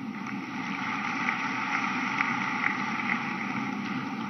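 Large audience applauding: dense, steady clapping that grows slightly louder over the first second or so.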